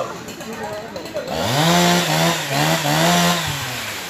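A small engine revving. It comes up about a third of the way in, swells and dips three or four times for about two seconds, then drops away near the end.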